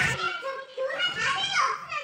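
A woman shouting angrily and abusively at a teacher in a classroom, heard in a real recording of the confrontation; her voice is high and strained.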